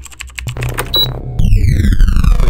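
Sci-fi sound effects of a wormhole generator powering up: rapid keyboard-like clicking, a short high beep about a second in, then a loud falling sweep over a deep rumbling hum as the portal opens.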